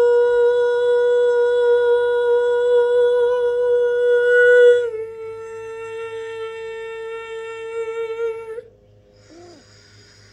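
A woman's voice holding long wordless notes in a healing chant: one steady note, then a step down to a slightly lower note about five seconds in, held until it stops shortly before the end.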